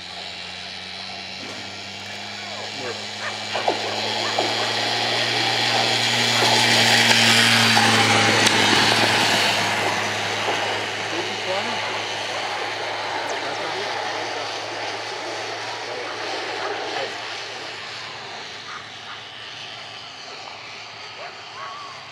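Motor of the track's mechanical lure giving a steady low hum that swells as it passes, loudest about eight seconds in, then fades. Spectators shout and cheer over it while the greyhounds race.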